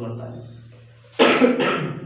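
A man coughs twice in quick succession, a little over a second in, after his voice trails off.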